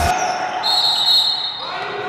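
Basketball practice in a gym: a basketball bouncing on the hardwood floor, a high squeak and players' voices, echoing in the large hall.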